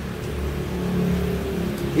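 A steady low background hum with a few faint held tones, growing a little louder around the middle.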